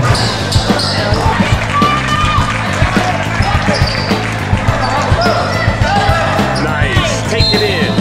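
A basketball is dribbled on a hardwood gym floor in repeated sharp bounces, mixed with short squeaks of sneakers on the court and voices in an echoing gym.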